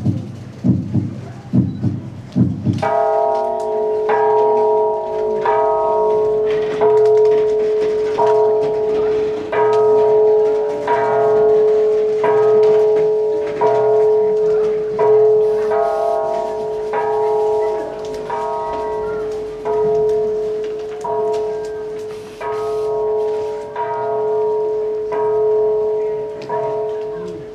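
A bell struck over and over at a slow, even pace on one pitch, each stroke ringing into the next. It begins about three seconds in, after a few low thumps.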